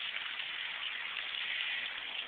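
Splash pad water jets spraying, a steady hiss with no breaks.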